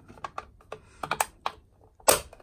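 Plastic cover of an Ellard garage door control box being pressed and snapped shut by hand: a string of light plastic clicks and taps, the sharpest about a second in.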